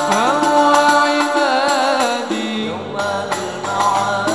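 Male voice singing a long, ornamented sholawat melody into a microphone over banjari frame drums (rebana) beaten in a steady rhythm. About halfway through the melody shifts and other male voices take it up.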